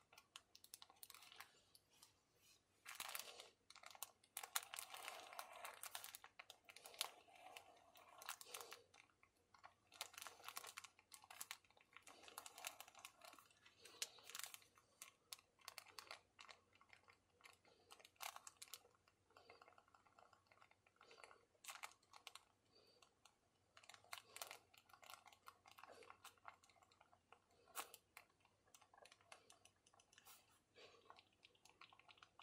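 Faint scratching and light tapping of a dip pen's metal nib on paper while writing by hand, with irregular small clicks. A denser stretch of scratchy rubbing comes a few seconds in.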